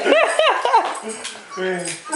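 Excited huskies whining and yipping: a quick run of about four high, rising-and-falling cries in the first second, then a lower, drawn-out whine near the end.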